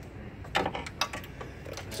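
Two sharp plastic clicks, about half a second apart, as the latched wiring connector is popped off an ignition coil, followed by a few faint ticks of handling.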